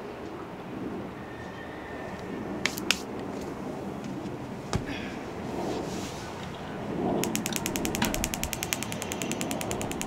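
Propane fire pit table's spark igniter being worked to light the burner while gas is flowing: a few single clicks, then from about seven seconds in a fast, even run of igniter clicks, about ten a second.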